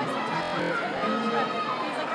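Strummed guitar music with voices over it, carrying through a large arena.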